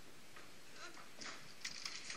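Faint, indistinct murmur of voices over low room noise in a theatre hall, with no clear event.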